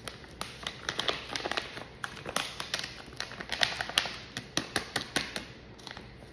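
Plastic pouch of powdered hair lightener crinkling as it is squeezed and tipped to pour into a plastic mixing bowl: a steady run of irregular small crackles and ticks.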